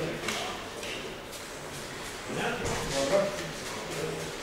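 Speech at a lower level than the surrounding talk, in short phrases with pauses between them.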